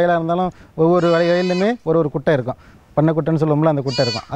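A goat bleating over and over in long, drawn-out calls at a steady pitch, with short gaps between them.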